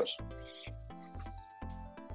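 Beef burger patty sizzling in a very hot cast iron pan, the sizzle starting just after it goes in. Background music with a steady low beat plays underneath.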